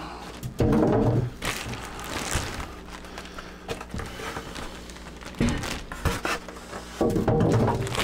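Clear plastic bag wrapped around a PC case crinkling and rustling as it is handled, with styrofoam packing being pulled away and a couple of knocks about five and a half seconds in.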